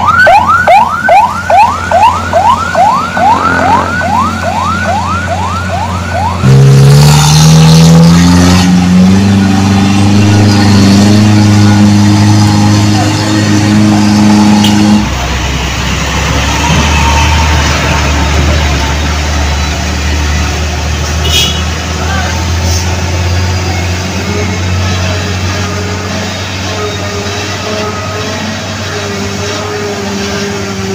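An emergency-vehicle siren on a car with a roof light bar, repeating quick rising sweeps about three times a second for the first six seconds. Then an engine revs up and holds a steady pitch until it cuts off sharply about fifteen seconds in, followed by the steady low rumble of truck engines climbing the hill.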